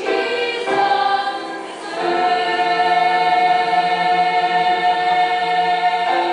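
Girls' choir singing a gospel song, moving through a few notes and then holding one long sustained chord from about two seconds in.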